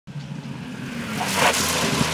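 Rally car engine approaching, its note growing steadily louder, with a brief rasping rush of noise about one and a half seconds in.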